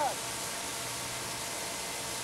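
Steady, even hiss with the distant sound of a GMP King Cobra radio-controlled model helicopter running as it flies overhead.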